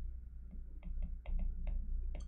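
Digital pen tapping and clicking on a drawing tablet while handwriting, a string of irregular short ticks over a low steady hum.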